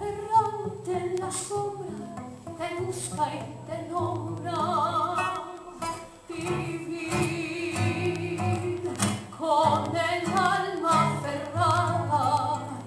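Woman singing a tango with wide vibrato on long held notes, accompanied by a classical guitar playing bass notes and chords.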